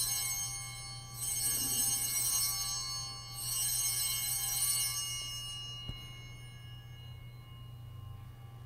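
Altar bells, a cluster of small handbells, shaken in rings to mark the elevation of the chalice at the consecration, each ring a high shimmering jingle that swells and fades. One ring is dying away at the start, two more follow about a second and three and a half seconds in, and a light click comes near six seconds.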